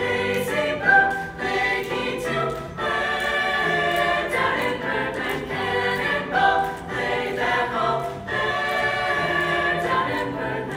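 Choir singing, accompanied by piano.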